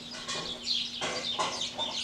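Birds calling outdoors: short, falling chirps repeated several times a second, with a few lower clucking calls.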